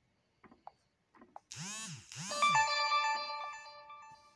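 A short electronic chime jingle: two quick swooping tones, then a ringing chord that fades away, like an app's audio cue at the start of a new chapter. A few faint taps on the touchscreen come before it.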